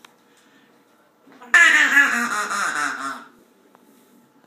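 A duck call sounded as one loud, fast run of wavering quacks that starts suddenly about a second and a half in and lasts a little under two seconds.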